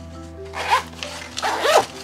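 Zipper on a fabric gear pouch being pulled, in two short runs about a second apart.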